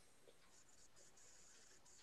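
Near silence: faint background hiss in a pause between speakers on a video call.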